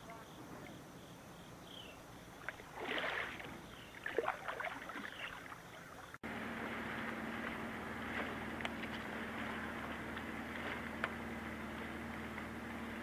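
Kayak paddle working the water, with a few splashes in the middle seconds. After an abrupt cut, a steady low hum with hiss and a couple of faint ticks.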